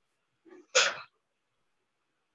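A person sneezing once, just under a second in: a faint lead-in breath followed by a single sharp burst.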